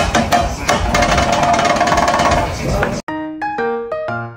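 Metal spatulas tapping and scraping rapidly on a teppanyaki griddle amid restaurant noise. About three seconds in it cuts off abruptly to a melodic music track of clear, separate notes.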